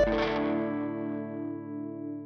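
The song's final chord on distorted electric guitar, left ringing after the drums stop at the start and slowly fading away.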